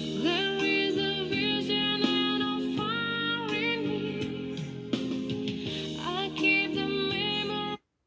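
A woman singing a slow ballad with held, wavering notes over instrumental backing, played back through a tablet's speaker. It cuts off abruptly near the end when the playback is paused.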